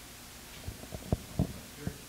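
Handling noise from a handheld microphone being moved in the hand: about five low, dull thumps and bumps, the loudest a little past a second in.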